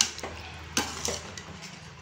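Metal spatula stirring chicken gravy in a metal pan, scraping and knocking against the pan in a few sharp clinks, the loudest at the start and just under a second in.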